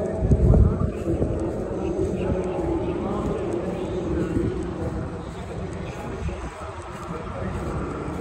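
A steady distant engine drone, with faint rising whines, under background voices. A loud low buffet, like wind on the microphone, comes about half a second in.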